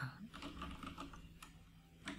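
Computer keyboard keys tapped in a quick, uneven run of light clicks, typing a short terminal command.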